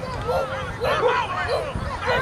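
Several people on the sideline shouting and calling out over one another in short raised calls.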